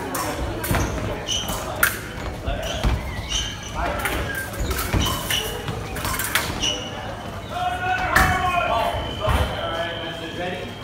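Fencers' shoes stamping and slapping on the piste during a bout, mixed with sharp clicks of blade contact, a shout and voices. Near the end, a steady electronic tone from the scoring machine, the signal of a registered touch.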